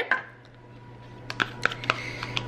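Metal spoon clicking and scraping against a plastic yogurt cup as Greek yogurt is scooped out, a handful of small sharp clicks in the second half after a quieter first second.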